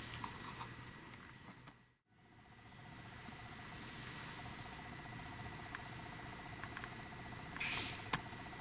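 Quiet room tone with recorder hiss and a few faint handling clicks. The sound drops out completely for a moment about two seconds in, and after that a faint, steady electronic whine runs on.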